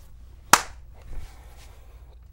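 A single sharp hand slap about half a second in, then faint low-level room sound.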